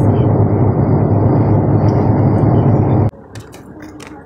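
Steady road and engine noise inside a vehicle driving at highway speed. It cuts off suddenly about three seconds in, leaving a much quieter outdoor background.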